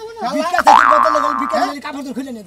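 A comic 'boing' sound effect about half a second in: a springy twang that leaps up in pitch, holds for about a second, and is the loudest sound, over a man talking.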